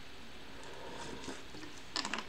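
Steady low hiss with faint, soft swallowing sounds as water is drunk from a plastic bottle.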